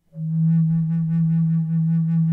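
A low flute enters a fraction of a second in and holds one steady low note in E, rich in overtones and gently pulsing with the player's breath.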